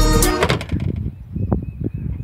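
Backing music ending in the first half second, followed by a few light knocks and handling noises as a plastic gutter guard strip is laid on a corrugated metal roof.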